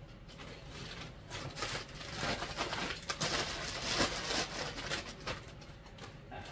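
Irregular rustling and crinkling from clothes and shopping bags being handled and gathered up, busiest in the middle seconds.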